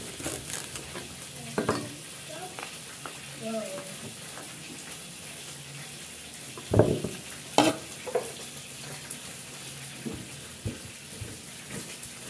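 Cleaver chopping a fresh bamboo shoot on a wooden chopping board: irregular knocks of the blade through the shoot onto the board, the loudest a little before the seventh second, with the rustle of its husk sheaths being peeled off between cuts.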